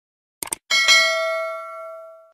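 Subscribe-button animation sound effect: a quick double mouse click, then a notification bell ding that rings out and fades over about a second and a half.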